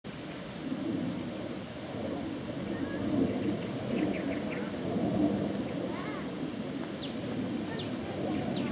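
Birds chirping outdoors: short high calls repeating every half second or so, with a few falling sweeps near the end, over a steady low background murmur.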